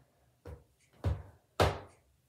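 Three dull thumps about half a second apart, each louder than the last, from a person moving about in a bathtub.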